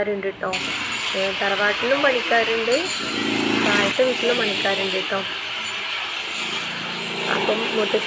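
A power tool runs steadily from about half a second in, a continuous hissing rattle that grows denser around the middle, while people talk over it.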